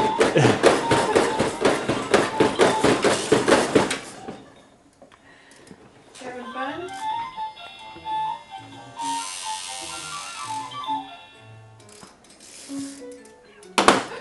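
Baby activity centre toys played by a toddler: a fast clattering rattle for the first four seconds, then the centre's electronic toy playing a simple tune of short, stepped notes.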